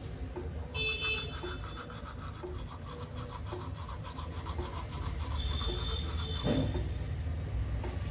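Toothbrush scrubbing a tongue coated in toothpaste foam, a wet rasping of quick back-and-forth strokes.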